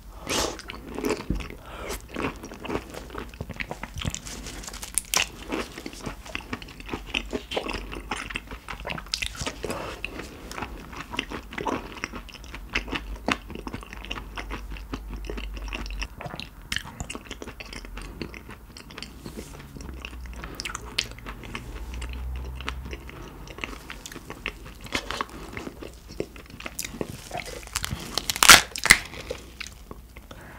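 Close-miked biting and chewing of raw carabinero shrimp: wet, irregular crunching and smacking throughout. Near the end a louder crackle as the shell of the next shrimp is pulled apart.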